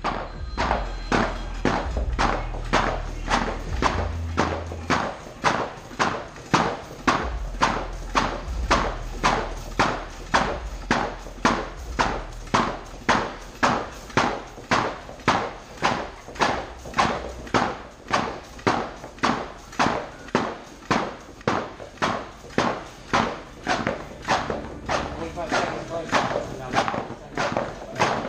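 Heavy battle ropes slammed down onto a padded gym mat in a steady rhythm, about two slams a second, in a timed all-out set.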